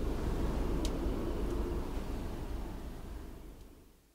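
Steady outdoor rumble and hiss, fading out over the last second.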